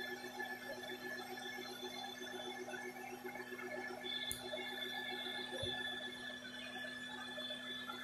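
Live bee-removal vacuum running at reduced suction, a steady hum with a faint higher whine, as its hose draws honey bees out of a wall cavity.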